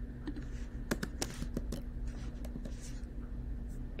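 Irregular light clicks and taps of a laptop being operated, over a steady low hum.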